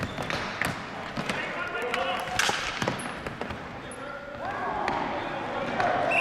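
Ball hockey play on a hardwood gym floor: many sharp clacks and knocks of sticks and the plastic ball, with players' calls and short squeaks in between.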